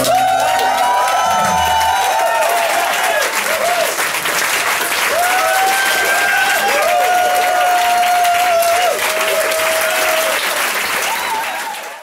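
Audience applauding and cheering, with repeated whistles and whoops over the clapping. The last acoustic guitar chord dies away in the first couple of seconds, and the applause fades out at the end.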